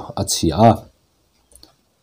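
A man's narrating voice speaking for about the first second, then a pause with a few faint clicks.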